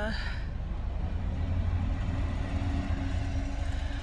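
Car interior noise: a steady low rumble of engine and road sound heard from inside the cabin, with a faint steady hum through the middle.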